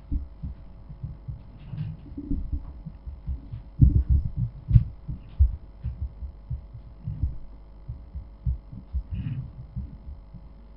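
Irregular low thumps and bumps picked up close on a microphone, with a few faint clicks, over a steady electrical hum.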